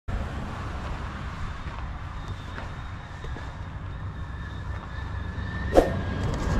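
Outdoor ambience: a steady low rumble, with a faint steady high tone above it and a short sharp knock just before the end.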